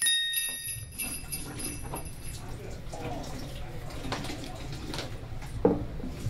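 The last jingle-bell chord of a short Christmas theme tune rings on and dies away over about the first two seconds. After it, quiet room tone with a low hum and faint small sounds, and a short voice sound near the end.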